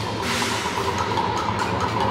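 Symphony orchestra playing live in a dense, busy texture. A high pitch is repeated rapidly over a steady low layer, and short sharp percussive ticks come in about a second in.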